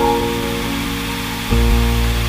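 Calm, slow piano music: held chords that change right at the start, then a new chord with a deep bass note about one and a half seconds in, over a steady hiss.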